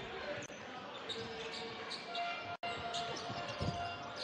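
A basketball being dribbled on a hardwood court, with steady arena crowd noise beneath it.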